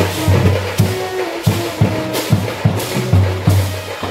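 Indian street brass band playing on the march: bass drums, side drums and hand cymbals beating a fast, even rhythm, with trumpets and baritone horns holding a melody over it.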